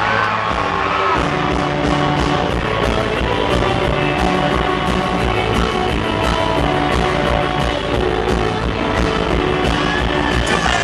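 Live rock band playing loudly through a concert hall's PA: the drums and bass guitar come in right at the start under the electric guitar riff and carry on with a steady beat.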